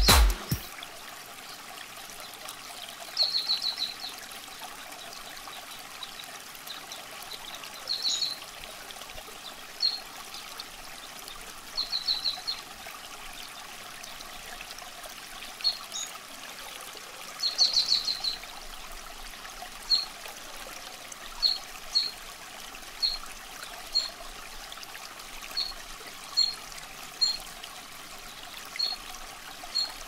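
Water trickling steadily, with short high bird chirps every second or two, some single and some in quick little runs.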